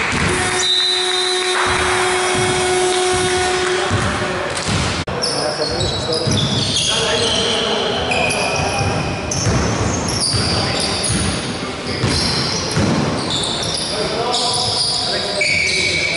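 Basketball game on a hardwood gym floor: the ball bouncing and many short, high sneaker squeaks as players run, with players' voices echoing in the large hall.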